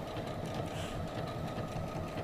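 Electric domestic sewing machine running steadily, its needle stitching down a fused fabric appliqué.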